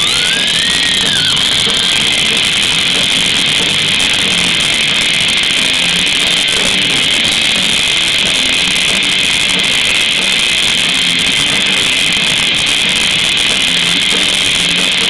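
Live rock band playing an instrumental passage: distorted electric guitars, bass guitar and drum kit together, loud and continuous. A guitar note bends up and back down in the first second or so.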